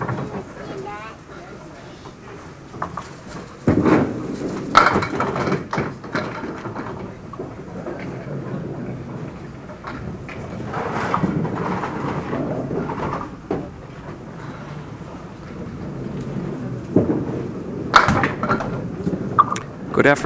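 Candlepin bowling alley ambience: indistinct voices murmuring, with a few sharp knocks and clatters from balls and pins, the sharpest about four, five and eighteen seconds in.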